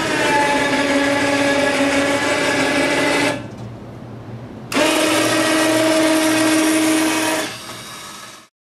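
Electric winch lift on a UTV snow plough running to raise the blade: a steady motor whine for about three seconds, a pause of about a second and a half, then a second run of about three seconds.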